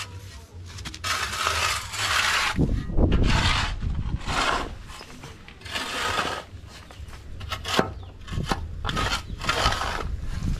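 A long-handled metal hoe scraping and dragging dry soil and debris over hard ground, in about half a dozen strokes of roughly a second each, with a few sharp clicks of the blade against stones.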